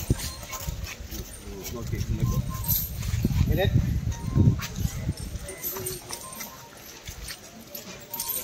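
People's voices, with the clinking of iron chains and the footfalls of a chained Asian elephant as it is led along on foot.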